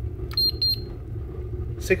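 Two short, high electronic beeps from a handheld infrared thermometer as it takes a temperature reading, over a steady low rumble.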